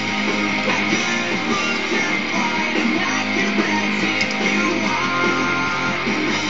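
Instrumental passage of a pop-rock song, with strummed guitars and bass over a steady band backing and no vocals.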